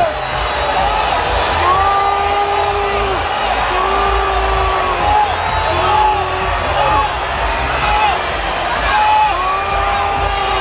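Large crowd cheering and shouting, with a high voice calling out in long, drawn-out cries repeated every second or two.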